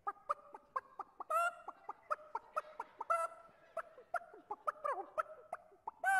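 A man imitating a clucking hen with his voice: a quick run of short, sharp clucks broken by a few longer drawn-out calls.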